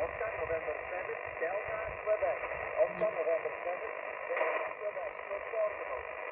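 A distant amateur station's voice coming over a portable transceiver's speaker: thin, narrow-band speech half-buried in steady radio hiss, which cuts off abruptly as the transmission ends.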